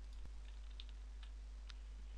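A few faint, scattered computer keyboard and mouse clicks over a steady low electrical hum, made while a file is being saved.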